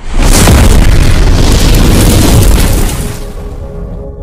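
Cinematic boom sound effect from an intro animation: a sudden, loud blast with a deep rumble that holds for about three seconds, then fades into soft music near the end.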